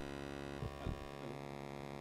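Low, steady electrical mains hum with many evenly spaced overtones, from the microphone and sound system during a gap in speech.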